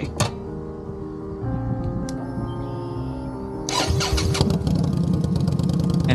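Indian Scout Bobber's V-twin engine started: it catches about four seconds in and settles into a fast, even low pulse. Steady background music runs underneath.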